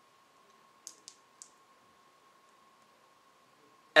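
Near silence: room tone with a faint steady hum, and three small quick clicks about a second in.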